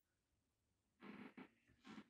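Near silence, then two short, soft breaths: one about a second in and a shorter one near the end.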